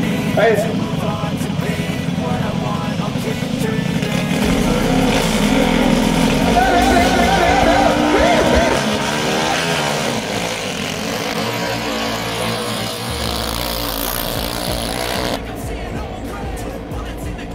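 Small Honda 6.5 hp single-cylinder engines on longtail racing boats running loudly together and revving. The sound drops suddenly near the end.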